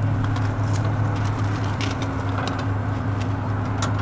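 Tow vehicle's engine idling steadily, with a few faint light clicks over it.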